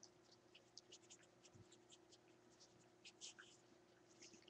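Near silence with faint, irregular wet clicks and smacks of newborn Catahoula puppies suckling, over a faint steady hum.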